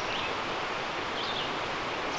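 Woodland outdoor ambience: a steady hiss of background noise, with a few faint, short, high bird chirps near the start and again a little past a second in.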